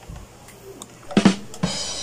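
Short drum-kit sting: a quiet start, then two sharp drum hits a little past a second in, with ringing above them near the end.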